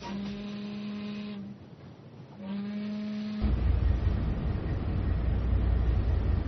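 A horn sounds two long, steady blasts of one pitch, each about a second and a half, with a gap of about a second between them. A loud low rumble sets in right after the second blast.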